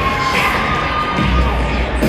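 A crowd cheering and shouting, with the routine's music playing underneath.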